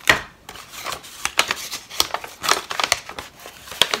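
Chocolate bar wrapper being opened and handled: irregular crinkling and rustling with a few sharper crackles.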